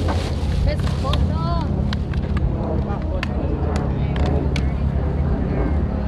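Steady low rumble of a boat's engine under way, with wind on the microphone. People talk in the background, and a few sharp clicks are heard in the middle.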